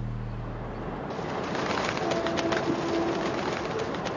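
A held low music note fades out, and about a second in it gives way to outdoor city ambience: a steady wash of distant urban noise with birds calling.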